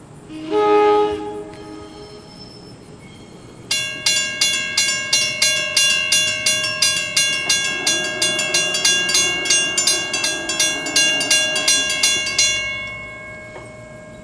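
A train horn gives one short blast, then a Western Cullen Hayes mechanical crossing bell starts up with rapid, even strikes, about three a second, for roughly nine seconds as the gates lower, and stops near the end with a brief ring-out.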